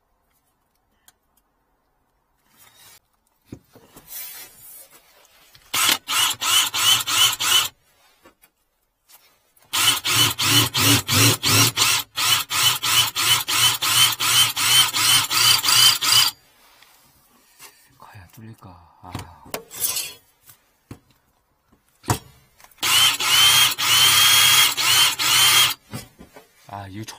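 An electric drill turns a 30 mm bimetal hole saw against a steel plate in three bursts, about two, six and three seconds long. The cut pulses about three times a second with a repeated rising squeal as the teeth grab and chatter on the metal. This is a test cut with a cheap hole saw that the user doubts can get through the steel.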